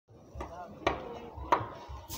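Three sharp knocks, about half a second apart, over faint background voices.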